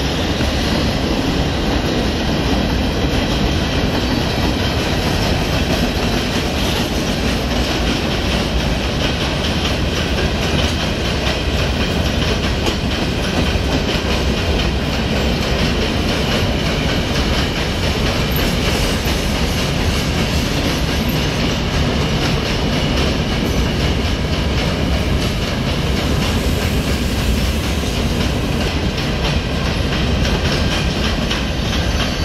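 Freight train of covered hopper cars rolling past close by, the loud, steady noise of its steel wheels running on the rails.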